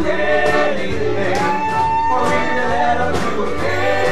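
Live band with accordion, guitar and drums playing a song, several men singing together in chorus over a steady drumbeat. A long note is held through the middle.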